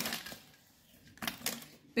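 Aluminium foil crinkling and a knife clicking against it while food is cut in the foil: a few short, sharp clicks a little past the middle, otherwise quiet.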